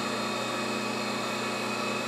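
Surface grinder running steadily: its motor and spinning wheel give an even hum with a faint hiss, the pitch unchanging.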